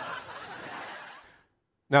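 Audience laughter after a punchline, fading away within about a second and a half and cut off into a moment of silence.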